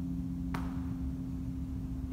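Electric bass guitar with notes left ringing and slowly dying away, and one sharp click from the strings about half a second in.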